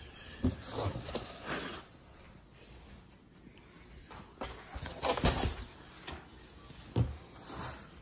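Foam packing inserts and a cardboard box being handled: scattered rustles and scrapes, the loudest a little after five seconds in, with a sharp knock about seven seconds in.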